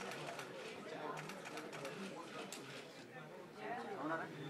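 Indistinct background chatter of people talking in a room, low and steady, with scattered faint clicks.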